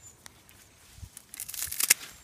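Rustling and crackling of beet leaves and stalks being handled and pulled in the row, in a short burst in the second half that is loudest just before the end.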